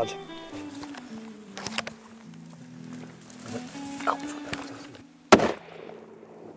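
Background music of sustained low notes, broken about five seconds in by a single loud, sharp rifle shot. One or two fainter sharp knocks sound earlier.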